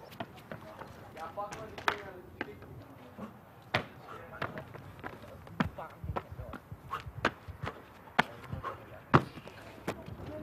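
Running shoes striking concrete as a freerunner runs, jumps and lands on walls and ledges: an irregular string of sharp footfalls and landing thuds, the loudest a little under 2 s in, near 4 s and a little after 9 s.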